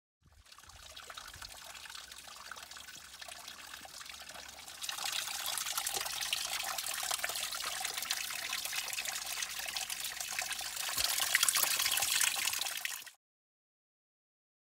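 A small mountain spring or brook trickling and splashing over stones, a steady water sound that gets louder about five seconds in and cuts off abruptly near the end.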